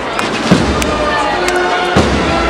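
Processional band playing a slow Holy Week march: a bass drum strikes about every one and a half seconds, twice here, under held wind tones.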